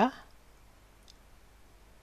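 Quiet room tone with one faint computer mouse click about a second in.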